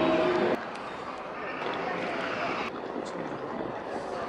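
Music that cuts off abruptly about half a second in, followed by outdoor street ambience: a steady hum of traffic and the murmur of distant voices.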